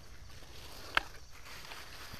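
Quiet outdoor background with a single short, sharp click or snap about halfway through.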